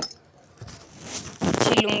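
A burst of rustling handling noise close to the microphone, building for about a second and loudest about a second and a half in, with a click at the very start.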